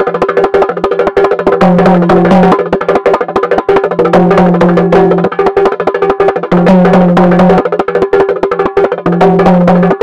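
Instrumental break of a Tamil gana song: a fast, dense dholak-style hand-drum rhythm over held low notes that change about once a second.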